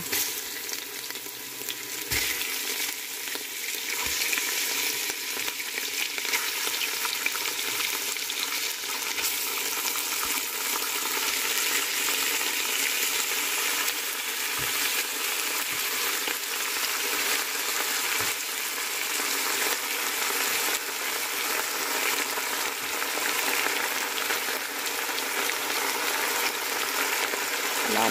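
Raw chicken thigh pieces sizzling as they fry in hot oil with softened onion in a pot, a metal spoon stirring and now and then knocking lightly on the pot. The sizzle gets louder about two seconds in as the chicken goes in.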